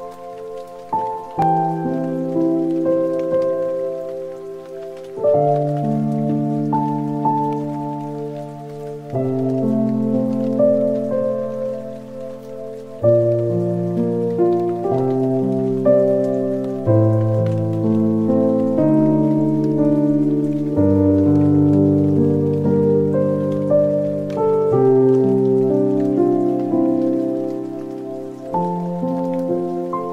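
Background music of slow, sustained chords that change every second or few, with a faint steady pattering noise underneath.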